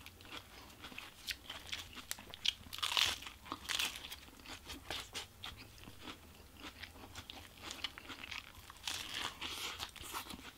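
Crunchy chewing of a lettuce-wrapped protein-style burger: crisp lettuce crunches and wet mouth clicks in an uneven run, loudest about three seconds in.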